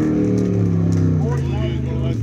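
A racing jet boat's engine running hard on the water course, its pitch sliding slowly down as it fades away towards the end. Faint voices are heard near the end.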